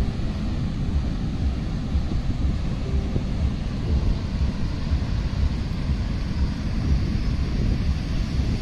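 Sea wind buffeting the microphone in a steady, fluttering low rumble, over the even hiss of heavy surf breaking on the beach.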